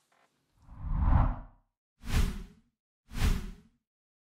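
Whoosh sound effects of a logo outro animation: one swelling whoosh with a deep rumble under it, then two shorter, sharper whooshes about a second apart.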